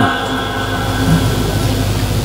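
A steady low hum and background noise, with the echo of the preacher's last words through the loudspeakers dying away in about the first half-second.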